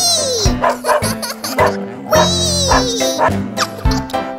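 Children's cartoon background music with a steady beat. A warbling, falling sound effect comes twice, near the start and about two seconds in.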